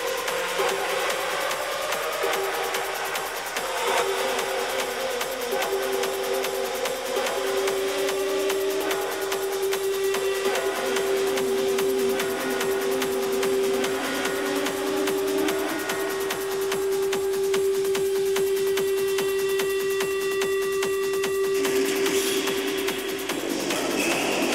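Industrial techno in a breakdown, with no kick drum or bass: a long steady synth tone holds over slowly gliding synth layers and a high hiss, and a noisy swell builds near the end.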